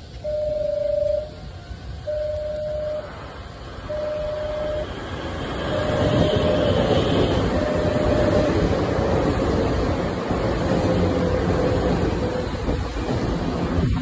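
Nankai 6000 series stainless-steel electric train running in alongside the platform, its wheel and motor rumble building from about three seconds in and staying loud. Over it, a repeating electronic warning tone beeps about once every two seconds, each beep about a second long, until it is lost under the train.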